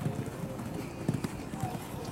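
Hoofbeats of a show-jumping horse on sand arena footing: a few irregular, dull thuds.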